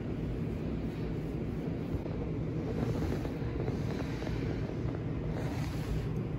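Steady low rumbling handling noise from a phone microphone held against a cloth hospital gown.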